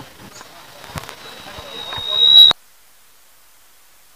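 Faint ground noise with a few soft knocks. A single high whistling tone, typical of public-address microphone feedback, builds from about a second in until it is loud, then cuts off abruptly, leaving only a faint steady hiss.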